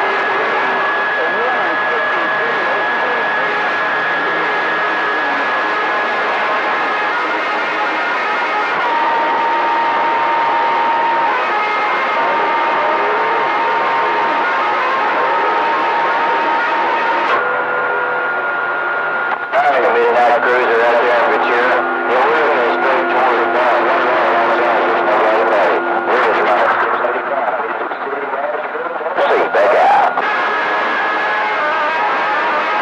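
A CB radio receiver on channel 28 (27.285 MHz) hissing with static and steady heterodyne whistles, with garbled, unreadable voices under the noise: distant skip signals. From about two-thirds of the way in it grows louder and crackles, with a broken, distorted transmission coming through.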